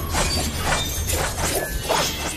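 Sound effects for an animated energy blast: a rapid run of crashing, shattering impacts over a steady low rumble, with music underneath.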